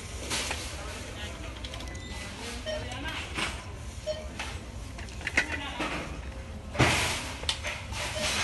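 Plastic DVD cases being handled on a wire rack, with scattered clicks and knocks and one brief loud clatter about seven seconds in, over faint background voices.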